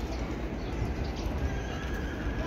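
Wind rumbling on the microphone over an open-air crowd ambience, with a faint, thin high-pitched note held through the second half.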